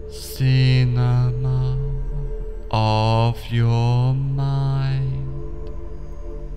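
Slow meditative background music: a steady low drone under chanted vocal phrases, each held for a second or two, with short breaks between them.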